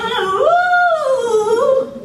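A woman singing one long held note without accompaniment. The pitch swells upward about half a second in and slides back down before the note stops near the end.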